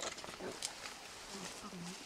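Leaves and stems rustling and snapping close by as a young mountain gorilla moves in the undergrowth. A few short, low grunt- or murmur-like sounds follow in the second half.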